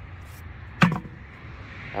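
A single short, sharp knock about a second in, over faint steady background noise.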